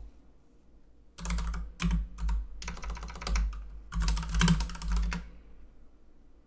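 Typing on a computer keyboard: several quick runs of keystrokes that start about a second in and stop near the end.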